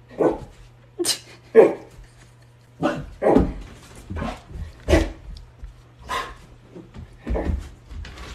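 Husky barking in about ten short, sharp calls at irregular intervals, over a steady low hum.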